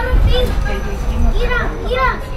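High-pitched children's voices talking and calling out over the steady low rumble of a moving electric shuttle bus.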